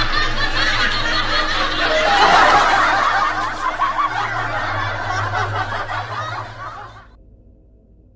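High-pitched cackling laughter in the manner of the kuntilanak ghost's laugh, loudest about two or three seconds in, then cutting off abruptly near the end.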